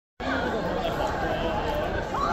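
Crowd chatter: many people talking at once in overlapping, indistinct voices at a steady level.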